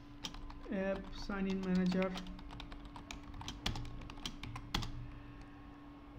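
Computer keyboard keys typed in irregular bursts of clicks as a line of code is entered.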